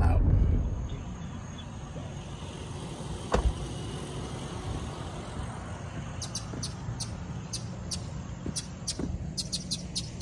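Low vehicle-cab rumble that falls away within the first second. Then a quiet outdoor hum with a single knock about three seconds in, and a run of short high chirps, several a second, from about six seconds on.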